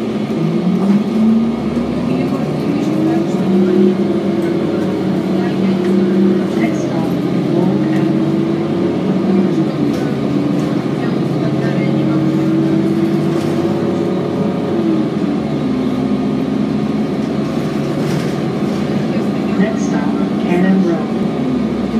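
Diesel engine of an Orion VII transit bus, heard from inside the cabin. Its pitch climbs over the first few seconds as the bus pulls away, then falls and rises again a few times as it drives on.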